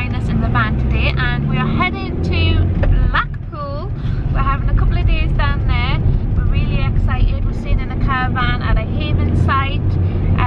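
A woman talking over the steady low road and engine rumble inside the cab of a moving converted work van.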